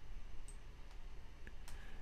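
A few faint computer mouse clicks over a low steady room hum.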